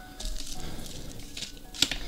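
Plastic zip bags and small packaged items being picked up and moved across a rubber mat: soft rustling and handling noise, with a sharper click near the end.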